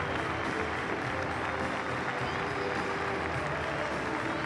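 Large stadium crowd applauding steadily, with a sung melody faintly carried underneath the applause.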